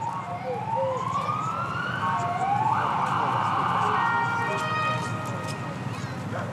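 Sirens of a police escort wailing, several rising sweeps overlapping one another and loudest in the middle.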